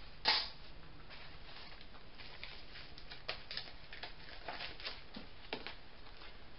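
Craft supplies handled on a tabletop: a short rustle just after the start, then scattered soft taps and rustles of card and a plastic packet being moved.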